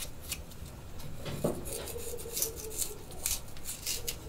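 Kitchen knife scraping and cutting the peel off a vegetable held in the hand: irregular short scrapes, about three a second. A faint wavering tone sits under it for about a second and a half in the middle.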